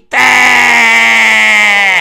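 A voice holding one long, drawn-out vowel for nearly two seconds, its pitch falling slightly near the end.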